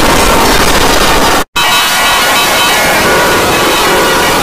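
Loud, heavily distorted and pitch-shifted logo jingle audio from a G Major effects edit, harsh and noisy throughout. It cuts out for a moment about a second and a half in, then comes back with ringing, bell-like tones over the noise.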